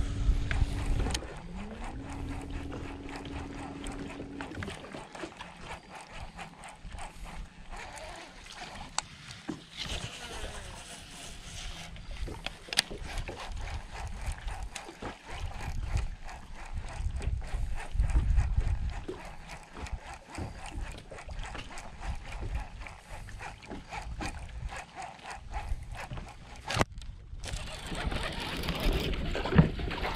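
A boat motor hums steadily, cuts out about a second in, then comes back with a rising whine and runs steadily until about four and a half seconds in. After that come quieter low rumbling from wind and water, with scattered small clicks and knocks of rod and boat handling.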